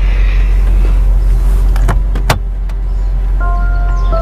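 Steady low rumble of a car cabin, with two sharp clicks about two seconds in as the passenger door is unlatched and opened. Soft music with held tones comes in near the end.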